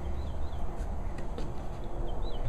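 A few faint high bird chirps over a low steady rumble, with a couple of light taps from mangoes being handled in cardboard boxes.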